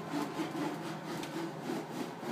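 A plastic Heinz ketchup squeeze bottle being cut open by hand, a rough sawing rub repeated in short strokes several times.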